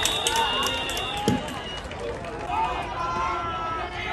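Several voices of football players shouting and calling out between plays, with a single dull thump about a second in.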